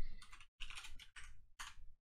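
Computer keyboard typing: four short runs of keystrokes with brief breaks between them.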